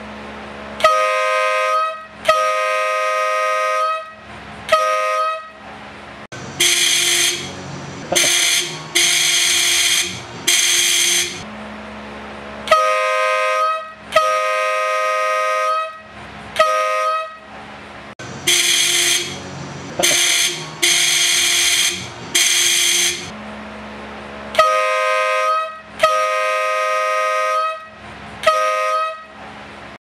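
Motorcycle horns sounded in alternating sets of three or four blasts. One set is the Honda Shadow 1100's original twin electric horns, giving a two-note beep. The other is the Euroblast 142 dB semi-air horn, giving a lower, harsher and brassier single-note blare.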